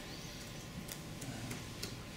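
A few faint, sharp clicks over steady background hiss and hum, most of them in the second half.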